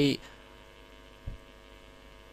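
Steady electrical hum, a set of thin unchanging tones, with a brief soft thump about a second and a quarter in.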